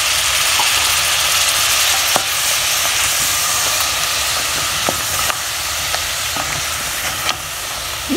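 Pork curry sizzling in a hot aluminium pot after a splash of water, stirred with a wooden spoon that knocks the pot a few times; the sauce has caught and scorched a little on the bottom. The hiss is steady and eases slightly toward the end.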